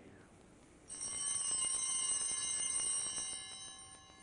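Altar bells rung at the elevation of the chalice after the consecration: a bright ringing of several bells that starts suddenly about a second in, holds for a couple of seconds, then fades away near the end.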